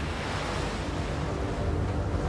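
Ocean surf washing against a rocky shore, a steady rush of water. From about a second in, soft held music notes are faintly heard underneath.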